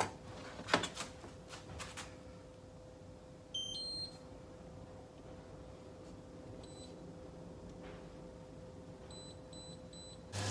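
Knife and hand knocking on a plastic chopping board a couple of times at the start. Then an induction hob's touch controls beep: a short run of tones stepping up in pitch about three and a half seconds in, then single short beeps as the controls are pressed, once and then three times near the end, over a faint steady hum.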